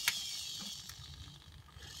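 Hobby servo in a robot arm's shoulder running, a high, wavering gear whine that fades away over the first second and a half, with a sharp click just after the start. The servo is driving the arm to its zero position, the maximum swing back.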